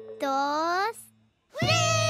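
Cartoon child's voice: a short rising vocal call, a brief silence, then a long held cry near the end as the characters slide down.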